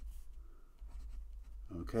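Pen writing on paper: faint, irregular scratching strokes as letters and subscripts are written out.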